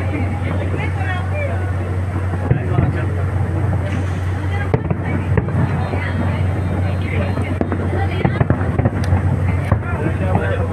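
Fireworks display: a run of scattered bangs and crackles over a steady low hum, with people's voices talking throughout.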